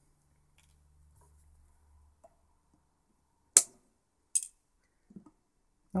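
Side cutters snipping excess component leads on a circuit board: two sharp snips about a second apart, followed by a few faint clicks.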